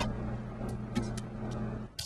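Refrigerator running with a steady low electrical hum, with a few light clicks about a second in.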